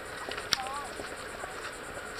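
Footsteps in flip-flops on a concrete sidewalk, with one sharp slap about half a second in. A faint, short, high wavering voice is heard just after it.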